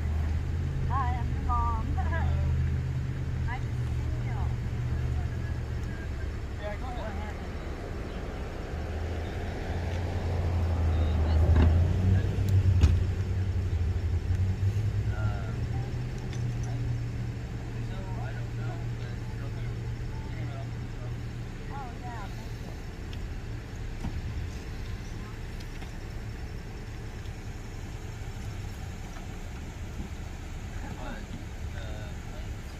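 Steady low rumble of car engines idling on the street. It swells to its loudest about ten to thirteen seconds in, as a vehicle draws close, then eases off. Faint distant voices come through at times.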